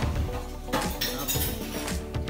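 Background music with several sharp clinks of dishes and cutlery in the middle.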